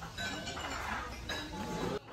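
Metal serving utensils clinking against a steel hot pot of seafood stew: two clear clinks with a brief metallic ring, one just after the start and one about a second later, over low restaurant room noise.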